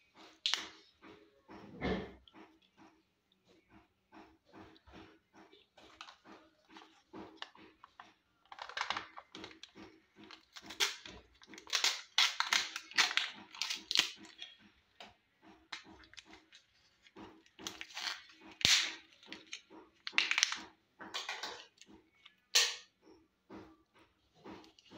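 Thin plastic packaging of a Kinder Joy egg and its toy capsule being handled and peeled, crinkling and crackling in clusters with a few sharp snaps.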